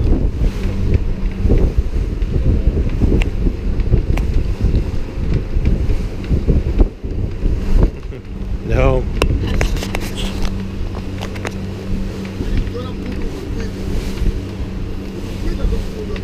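A wooden boat's engine running steadily, with wind buffeting the microphone, heaviest in the first half. About nine seconds in there is a short wavering vocal sound.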